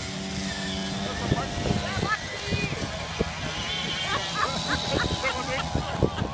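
Moped engines running as riders race along a dirt course, with a steady engine tone most prominent in the first second. Spectators' voices chatter over it through the rest.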